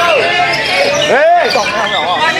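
White-rumped shama (murai batu) singing: a fast run of rich, varied whistled notes, with a loud arching whistle about a second in.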